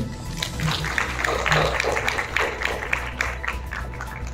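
Audience applauding in a hall. The clapping swells about a second in and thins out near the end.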